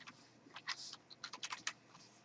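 Faint computer keyboard typing: a quick run of about ten keystrokes as a short word is typed into a search box.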